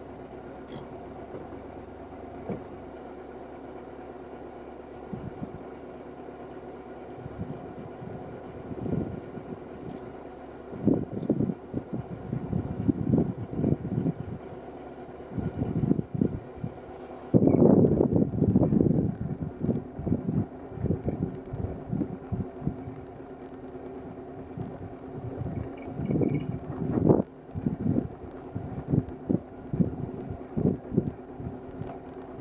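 Jeep driving along a rough forest trail: the engine runs at a steady pitch while the vehicle knocks and rattles irregularly over bumps, loudest in a jolting stretch about seventeen seconds in.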